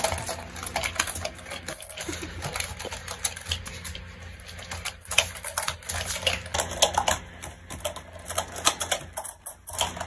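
A quick, irregular run of light clicks and taps from small balls being tossed, caught and knocked together in a child's hands, with a brief pause shortly before the end.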